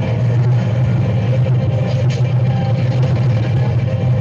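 Loud, steady low rumble of a stampeding bison herd's hooves.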